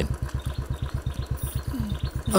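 Royal Enfield single-cylinder motorcycle engine idling with a steady, even beat.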